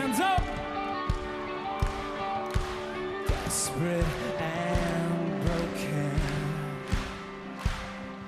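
Live rock band playing a slow, steady kick-drum beat, about one hit every 0.7 seconds, under sustained guitar and synth chords, with voices over it.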